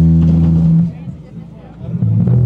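Live rock band with electric guitar and bass holding a loud low chord that cuts off sharply under a second in. About a second of quieter crowd chatter follows, then the bass and guitar come back in near the end.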